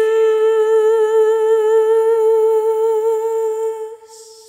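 A woman's unaccompanied voice holding one long note with a slight vibrato, fading out near the end.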